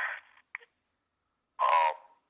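A voice over a prison phone line trails off, a second or so of silence follows, and a man's voice starts again near the end.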